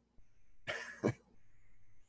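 A single short cough, about two-thirds of a second in.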